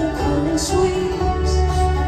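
Live band music: acoustic guitar strumming over bass and drums, with held sung notes above.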